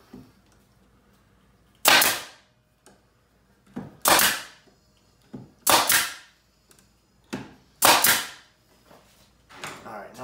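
Pneumatic nail gun firing four times, about two seconds apart, each a sharp shot with a short decay, driving nails into the pine side of a wooden hive box; quieter clicks come between the shots.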